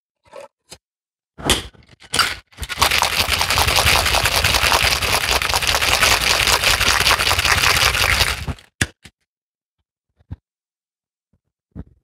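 Ice rattling rapidly inside a two-tin metal cocktail shaker, shaken hard for about six seconds. A few sharp metal knocks come before the shake, as the tins are fitted together, and after it.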